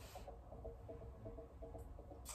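Near silence: quiet room tone with a low steady hum and faint, broken tones.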